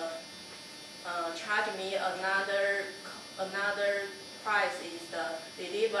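A person speaking, over a steady low electrical hum.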